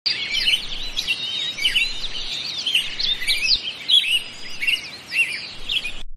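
Many birds chirping at once, a dense run of short overlapping calls over a steady background hiss.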